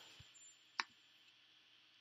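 Near silence with a single sharp click a little under a second in, as the code is run; a faint, thin, high steady tone from a faulty buzzer on a Raspberry Pi, stuck on, cuts out shortly after.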